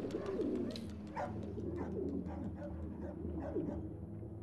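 Pigeons cooing, a series of short low calls that bend in pitch, over a steady low hum.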